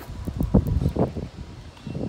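Wind buffeting the microphone in uneven gusts, a low rumble that comes and goes and eases off near the end.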